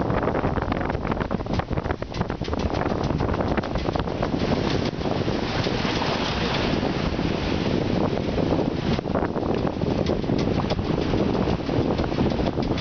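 Wind buffeting the microphone in gusts over the steady rush of water along the hull of a sailing yacht under way in a choppy sea.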